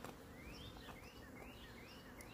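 A bird calling faintly in the background: a quick series of short, rising chirps, about three a second.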